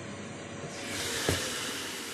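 Ninja Foodi Max health grill and air fryer being opened mid-cook on the 180-degree roast setting. About two-thirds of a second in, a steady hiss from the cooking chamber swells up as the lid lifts, with a single knock a little after.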